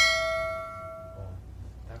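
Notification-bell sound effect of a subscribe-button animation: a single bright metallic ding that rings out and fades over about a second and a half.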